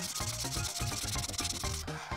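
Felt tip of an Imagine Ink marker rubbing quickly back and forth on coloring-book paper as it fills in a path, with light background music under it.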